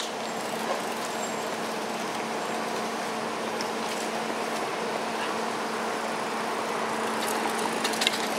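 Steady road traffic noise from passing cars, with a constant low hum under it and a few faint clicks near the end.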